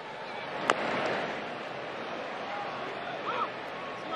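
Ballpark crowd murmur through a baseball game, with one sharp crack less than a second in as the pitch reaches home plate.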